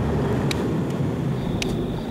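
Pickup truck on the move, heard from its open back: a steady low engine and road rumble, with two short clicks, about half a second in and near the end.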